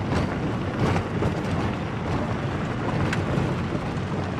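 Wind blowing across the camera microphone: a loud, steady, fluttering rumble with hiss above it.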